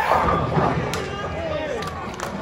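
Bowling ball running down the lane and hitting the pins, a sharp crash about a second in, with onlookers' voices.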